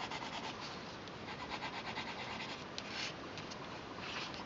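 Brown coloured pencil shading on tan drawing paper: rapid back-and-forth strokes rubbing and scratching across the paper, with a brief louder rub about three seconds in.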